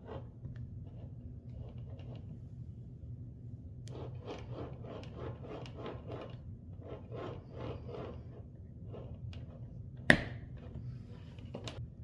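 Test lead plugs being worked out of a handheld digital multimeter's input jacks: irregular rubbing and scraping of fingers and plastic, busiest in the middle, then a sharp click about ten seconds in and a lighter one near the end.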